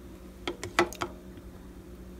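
A few quick clicks and clinks of a spoon against a container while annatto powder is scooped out, bunched together between about half a second and a second in.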